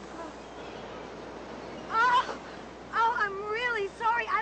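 A person's high, wavering, wordless cries: a short one about two seconds in and a longer, wobbling one near the end, typical of someone moaning in pain after being hurt.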